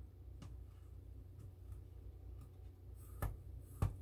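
Quiet handling of a plastic cold brew coffee pot and its filter: a few faint ticks, then two sharper knocks about three and four seconds in, over a low steady hum.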